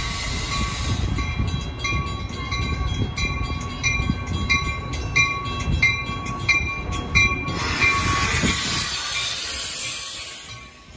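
Metra bi-level commuter train pulling slowly into a station with a low rumble, while a bell rings steadily about twice a second. From about seven seconds in, a loud hiss of air takes over as the train comes to a stop.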